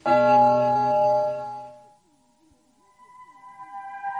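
A clock chime sound effect marking midnight: one deep bell-like strike that rings and dies away over about two seconds. Near the end a steady high tone fades in, the start of eerie background music.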